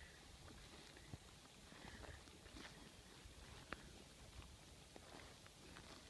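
Near silence, with a few faint, irregular ticks of footsteps in the grass.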